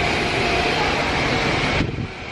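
Steady rushing noise of wind buffeting the microphone over running fountain water; the hiss thins out near the end.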